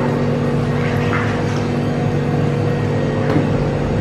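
Indoor jacuzzi's pump motor running, a steady low hum.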